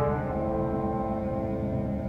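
Contemporary chamber music: the wind ensemble holds a sustained low chord while the ringing of a loud percussion strike dies away, the whole slowly fading.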